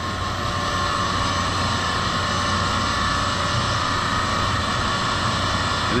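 Baggage conveyor drive restarting after a cleared bag jam: steady machine running noise with a faint whine, building up over the first second and then holding even.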